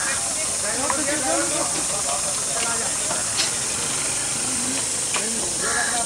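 A steady high-pitched hiss, with faint voices talking underneath.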